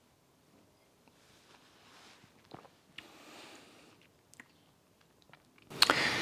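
Faint mouth sounds of a man tasting a sip of whiskey, holding it on his palate: soft breaths and a few small clicks of the tongue and lips.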